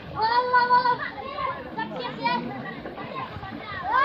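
Children shouting and calling out to each other while playing in the water: a long high call just after the start, shorter cries in the middle, and a rising call at the end.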